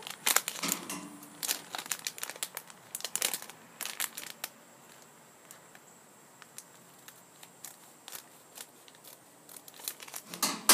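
Foil blind bag crinkling in the hands as it is handled and torn open at the top, in irregular crackles that thin out after the first few seconds.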